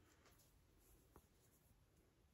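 Near silence: faint rustling of a cotton t-shirt being handled and held up, with one small tick about a second in.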